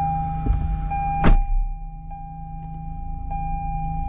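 2021 Toyota Highlander's 3.5-litre V6 starting on push-button start: it catches with a short, sharp burst about a second in and then runs at idle. A steady electronic dashboard chime tone sounds throughout, briefly breaking about once a second.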